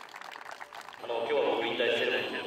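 Faint scattered clapping, then from about a second in a louder voice, spoken through a public-address system.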